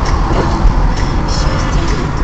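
Steady road and engine rumble inside a moving car's cabin as picked up by a dashcam microphone, with music playing over it.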